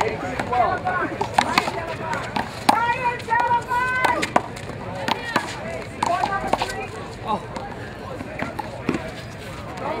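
A one-wall handball rally: irregular sharp smacks as the rubber ball is struck by hand and hits the concrete wall and court, with a shout about a third of the way in and an "Oh!" near the end.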